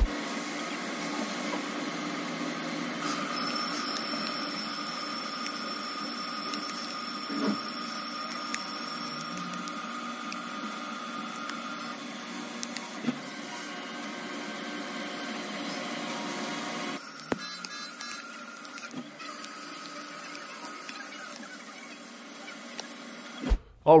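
CNC lathe rough-turning a 416 stainless steel bar with a WNMG 432 carbide insert: a steady machining sound with held tones and a few sharp clicks, shifting about two-thirds of the way through.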